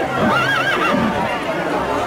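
A horse whinnies once, a quavering call lasting under a second in the first half, with voices around it.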